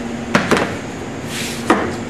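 A steel framing square being handled and laid on a foam kiteboard core: three sharp clacks, two close together early and one near the end, with a short scrape between them.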